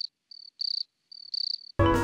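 Crickets chirping, a high, even chirp about every 0.7 s, each one a faint lead-in and a louder pulse. Near the end, jazzy music with clarinet and piano cuts in suddenly and drowns it out.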